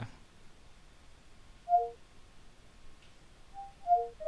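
Short electronic chimes from Windows 10's Cortana voice assistant: a brief two-note tone about two seconds in, then a quick run of falling tones near the end, as Cortana finishes listening to the spoken request and starts processing it.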